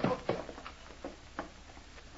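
Footsteps as a radio-drama sound effect: a few slow, unevenly spaced steps, the loudest at the start and the rest fainter, over a low hum.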